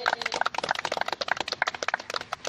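A small group of people applauding, a quick, uneven patter of hand claps.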